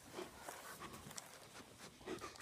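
Faint snuffling of a dog sniffing right at the microphone, with a few soft ticks and breaths.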